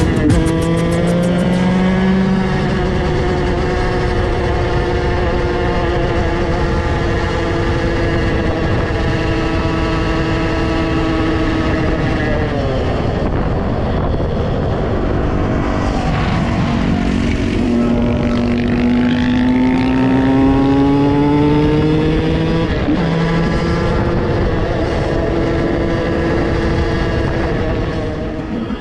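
KTM SX 125 two-stroke motocross bike engine running on the road at a steady cruise. About twelve seconds in the engine pitch falls as it slows, then climbs again as it accelerates back up to speed.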